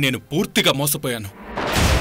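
A few spoken words, then about one and a half seconds in a sudden deep boom from a dramatic music sting sets in and holds.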